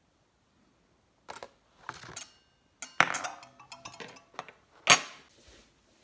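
Metal kitchen utensils clinking and knocking on a countertop. After a second of quiet comes a run of separate knocks and clinks, some ringing briefly, with the loudest knock near the end.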